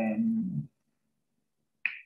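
A man's voice trails off on a drawn-out word, then near-total silence, then a short mouth click just before he speaks again.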